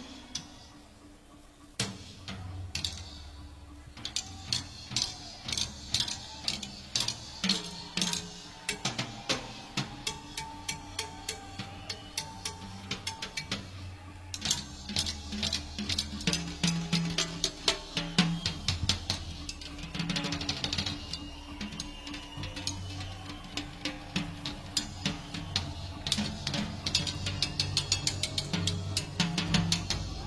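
Live rock concert recording in a percussion-led passage: drum kit and percussion hits over sustained bass tones. It starts quieter and builds steadily in density and loudness.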